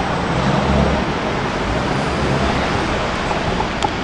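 Road traffic noise: a steady wash of street noise with a passing vehicle engine's low hum in the first half.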